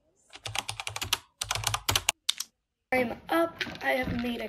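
Quick, sharp taps of typing on a tablet, in short runs, stopping about two-thirds of the way through. A voice starts near the end.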